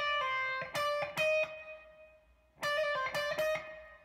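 Electric guitar playing a sixteenth-triplet hammer-on and pull-off figure from E flat, played twice, the second time shorter after a brief pause.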